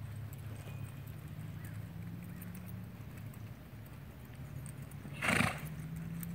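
Hoofbeats of a horse loping on a dirt arena, with a short, loud snort about five seconds in.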